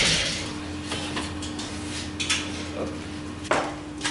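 A sieve shaker's running noise fades out over the first half second, leaving a low steady hum. Then a few light metallic clinks and one sharp metal clank about three and a half seconds in, as the stainless steel laboratory sieves are handled.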